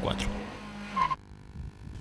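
Faint engine drone of a Ford EcoSport driving away: a steady low tone that dips in pitch about a second in, then drops away sharply to near quiet.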